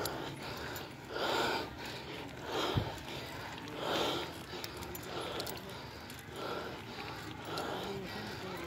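A tired cyclist's heavy breathing while pedalling, one loud breath about every second and a quarter. A single low thump a little before three seconds in.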